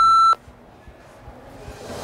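Single steady electronic timer beep marking the end of the 30-second countdown: time is up. It cuts off abruptly about a third of a second in.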